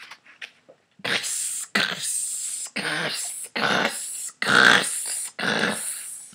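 Footsteps crunching through snow: six heavy crunches, roughly one a second.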